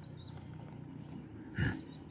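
Quiet room noise with faint ballpoint pen strokes on paper, and one brief, sharp, louder sound about one and a half seconds in.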